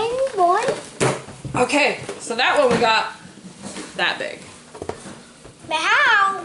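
People talking at a table in a small room, with a brief knock about a second in; a child's high voice starts up near the end.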